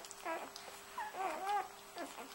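Newborn puppies whimpering as they nurse: a short squeak, then a couple of longer whines that rise and fall in pitch about a second in.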